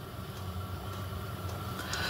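Steady low hum of workshop room tone, with no distinct knocks from the parts.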